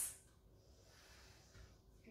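Near silence: room tone, after the last of a spoken phrase fades out just after the start.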